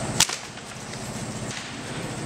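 A single sharp crack of a lunge whip, about a quarter second in, used to drive a horse on.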